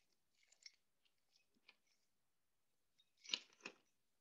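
Mostly near silence, with faint ticks and two short, sharper clicks a little after three seconds in: drawing pens or colours being handled as one colour is swapped for another.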